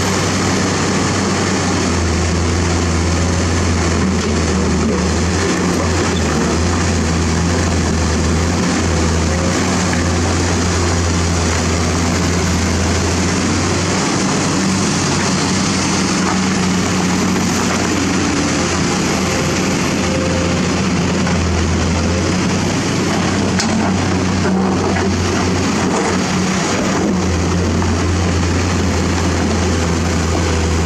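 A hydraulic excavator's diesel engine running steadily under digging load. Its low drone rises and drops every few seconds as the boom and bucket work.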